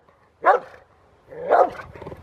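Rottweiler barking at an even pace, about one bark a second, in a hold-and-bark at the helper in the blind during IPO protection training.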